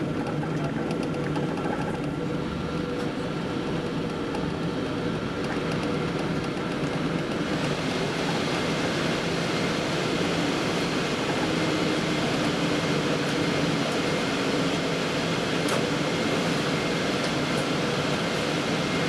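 Steady cabin noise of a Boeing 777-200ER taxiing, with the engines at low power and the air-conditioning running. The hiss grows brighter partway through.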